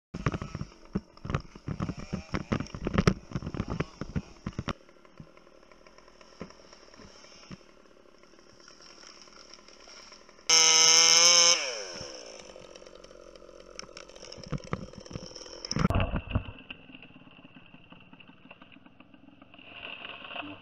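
Chainsaw revved hard for about a second, its pitch falling as it drops back. Before it comes a rapid run of knocks and clatter in the first few seconds, with a shorter cluster of knocks later.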